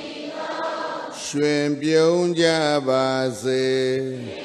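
A man's voice chanting Buddhist verses in a slow intoned chant, with long level held notes that step between a few pitches. It starts about a second in after a brief pause.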